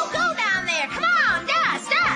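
A high-pitched cartoon voice giving a quick run of squealing cries, each rising and then falling in pitch, about five in two seconds, over background music.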